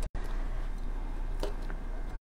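Kitchen knife cutting red grape stems on a cutting board: a couple of faint taps about one and a half seconds in, over steady background noise.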